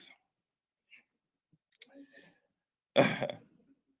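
A man clears his throat once, briefly, about three seconds in; before it there is only a faint click and light room sound.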